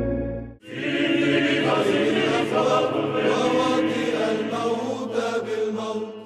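A male voice singing Orthodox church chant over a low held drone. The sound cuts out briefly about half a second in, then the chant resumes and begins to fade near the end.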